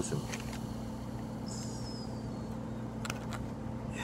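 Freshly poured carbonated soda fizzing in a glass measuring cup held close to the microphone: a steady hiss of bursting bubbles with a few small crackles.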